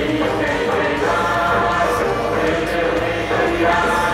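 Music with a choir singing held notes.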